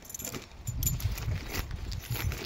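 Keys jingling in small irregular clinks, with footsteps, as someone walks.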